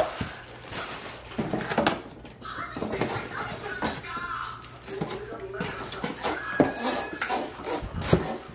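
Plastic packaging crinkling and rustling while the parts of a new handheld vacuum are unpacked, with a few light knocks as pieces are set down, the sharpest right at the start and another about two-thirds of the way in.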